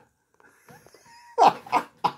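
A man's short non-speech vocal sound, one brief burst about one and a half seconds in, after a near-silent pause.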